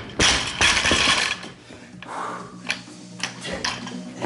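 A loaded barbell with bumper plates bouncing and rattling on a wooden lifting platform after being dropped from a lift. The rattling settles after about a second, and a few lighter clinks of plates and collars follow later as the bar is taken up again.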